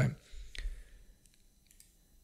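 A single faint click about half a second in, with faint low noise around it, after the end of a spoken word; then near silence.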